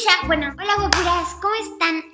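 A woman's excited voice with a single sharp hand clap about a second in, over a low sustained music note that fades out near the end.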